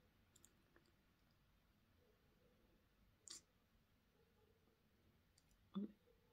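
Near silence broken by a few faint clicks, as of a smartphone being tapped and handled in the hand; the clearest click comes about halfway through and a slightly louder one near the end.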